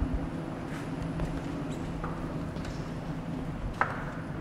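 Footsteps on a hard floor as people walk into a tank room, with a few scattered knocks and a sharper knock near the end, over a steady low machinery hum.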